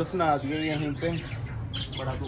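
A man talking, with a bird squawking among the caged birds.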